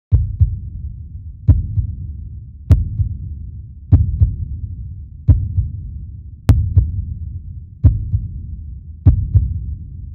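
A deep, heartbeat-like double drum beat repeating about every 1.2 seconds, each beat a sharp hit followed closely by a softer second one, booming low and fading before the next.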